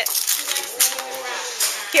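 Gift wrapping paper rustling and crackling as small children pull and tear it off presents, in quick irregular crinkles.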